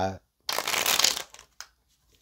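Tarot cards rustling briefly as they are handled, a dry papery shuffle lasting under a second, followed by a faint click.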